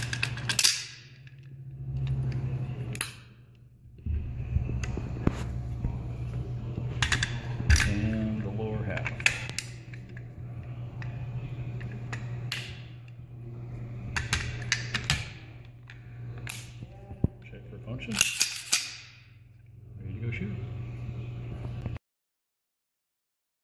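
Sharp metallic clicks and clacks of a piston-driven AR-15-type rifle being put back together, as the bolt carrier group is slid into the upper receiver and the upper is closed onto the lower. A steady low hum runs underneath.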